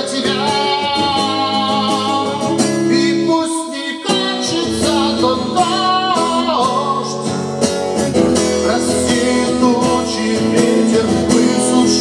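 A man singing a song while strumming an acoustic guitar, with a short break in the sound about four seconds in.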